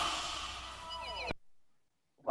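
Final hit of a heavy-metal theme song ringing out and fading, with a short falling slide about a second in, then cut off abruptly.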